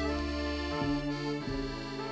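Instrumental film-score music: held, sustained chords that change twice.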